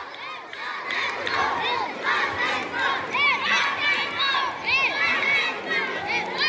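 A crowd of spectators, many of them children, shouting and cheering swimmers on during a race. Many high voices overlap in short rising-and-falling shouts without a break.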